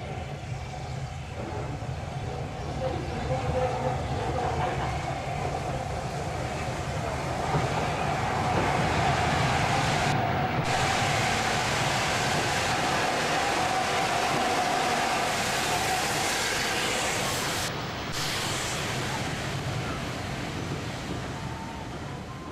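LNER A4 Pacific steam locomotive Mallard running through a station with its train, the sound building as it approaches and loudest as it passes. The coaches' wheels then roll by on the rails, the sound easing off near the end.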